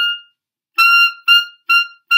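Clarinet playing a high G in the altissimo register. A held note ends just after the start, then the same note sounds again about three quarters of a second in, held briefly and then tongued as short repeated notes.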